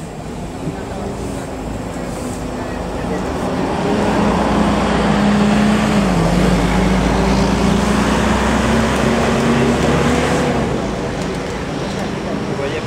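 Ikarus 435 articulated diesel bus driving past close by: its engine grows louder as it approaches, dips briefly in pitch about halfway through as it passes, then fades as it pulls away.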